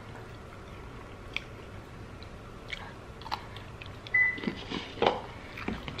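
A person chewing a bite of a pickle sandwich, with scattered soft crunches and mouth clicks. There is a brief high-pitched tone about four seconds in.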